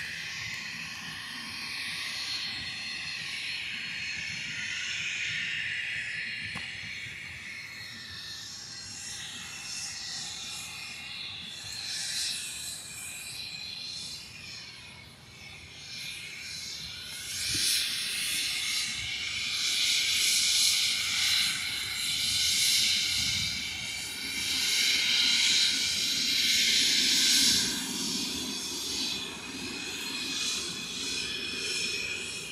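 Business jet's twin rear-mounted turbofan engines at taxi power, giving a high whine and hiss with slowly shifting pitch. It gets clearly louder a little over halfway through as the jet draws near, and a low rumble comes in near the end.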